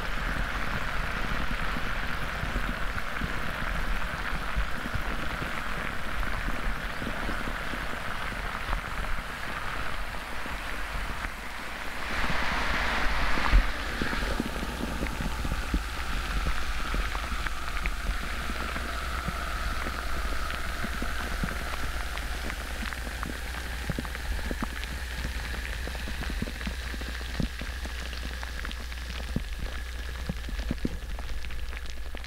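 Alka-Seltzer tablet fizzing in a glass of water, picked up by a piezo contact microphone in the water and amplified: a dense crackle of tiny popping bubbles, like rain. It swells louder for a couple of seconds about twelve seconds in.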